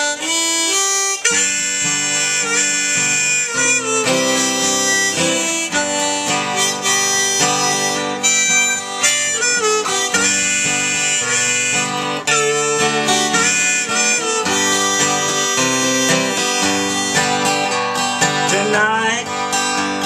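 Harmonica held in a neck rack playing a sustained melody over a strummed guitar: the instrumental introduction to a country song.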